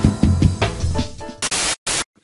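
Intro music with drum hits that thins out, then two short bursts of static noise about one and a half seconds in, cutting off suddenly: a glitch-style video transition effect.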